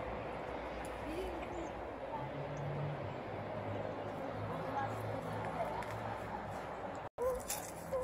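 Quiet outdoor background with a low steady hum and faint distant voices; the sound cuts out completely for a moment about seven seconds in.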